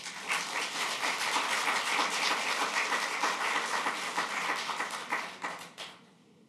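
Audience applauding, a dense patter of many hands clapping that starts at once and dies away near the end.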